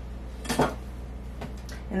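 A pinned polyester football jersey being handled and turned over on an ironing board, with a short light clink about half a second in and a fainter click later, over a steady low hum.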